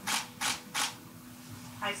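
Aerosol spray can hissing in three short bursts, one after another in the first second.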